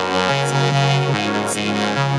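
Happy hardcore dance music in an instrumental passage without vocals: bright synthesizer chords and lead with changing notes, and a short hissy cymbal-like hit twice, about a second apart.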